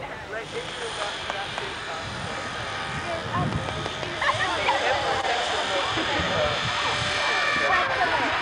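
A steady engine drone that builds gradually over several seconds, with scattered voices of a group chatting over it.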